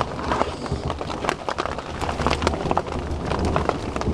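Heavy rain drumming on a tarp over a Jeep, heard from underneath: a dense, steady patter of countless small taps with a low rumble beneath.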